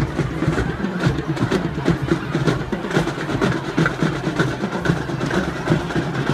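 High school marching band playing on the field, with a steady stream of quick drum strokes from the drumline under the band.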